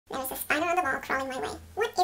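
A woman's speaking voice, the words not made out.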